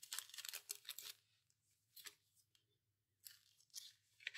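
Faint rustling of paper as the pages and tucked-in cards of a handmade junk journal are handled and turned, in short bursts mostly during the first second, with a few more later on.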